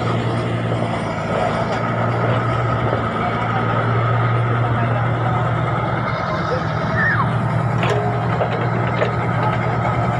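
Komatsu PC100 hydraulic crawler excavator's diesel engine running steadily while the machine works its boom and bucket, digging soil.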